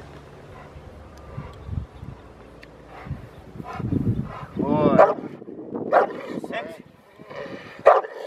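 Rottweiler barking and yelping in a string of excited calls with whining between them. The calls grow louder and closer together from about halfway in. It is a dog worked up in protection drive at a helper holding a bite sleeve, vocalizing against its handler's commands to be quiet.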